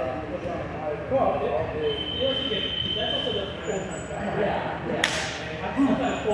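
Men's voices talking indistinctly, with one sharp slap about five seconds in.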